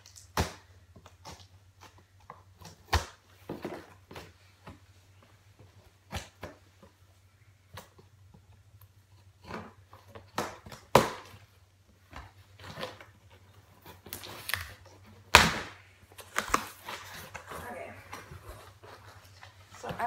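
A cardboard shipping box being opened by hand: scissors cutting the packing tape, then irregular scrapes, taps and knocks as the cardboard flaps are worked open, the loudest knock about fifteen seconds in. A faint steady low hum runs underneath.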